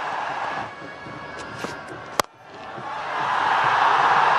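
Stadium crowd noise that falls away, broken about two seconds in by a single sharp crack of a cricket bat striking the ball, after which the crowd noise swells and stays loud.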